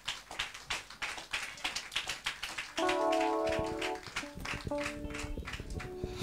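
Congregation clapping, a dense irregular patter of hand claps, with sustained keyboard chords coming in about halfway through.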